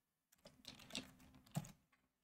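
Faint computer keyboard keystrokes: a few scattered, soft key clicks over about a second.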